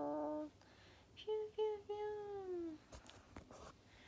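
A young woman humming a short wordless tune: a held note, then three short notes and a long note that slides downward.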